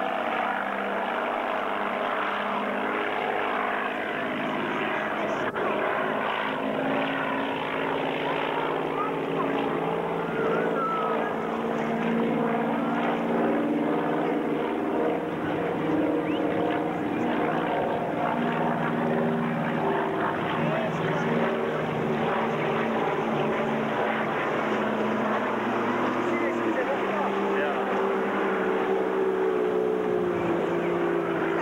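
Twin-engine Aero Commander flying overhead: a steady engine-and-propeller drone whose pitch drifts slowly up and down as the plane banks and moves across the sky.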